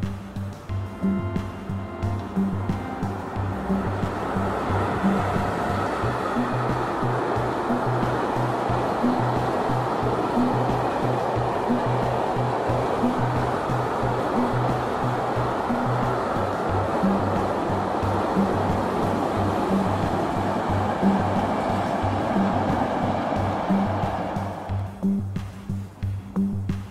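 Background music with a steady low beat, over the rushing noise of a passing train that swells over the first few seconds and fades out near the end.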